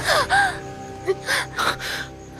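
A woman gasping sharply in pain, in short breaths: two near the start and two more after about a second, with a brief whimper at the very start. Soft background score runs underneath with held tones.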